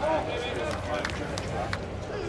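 A person's voice calling out loudly at the start, over steady outdoor ballpark background noise, followed by a few faint clicks.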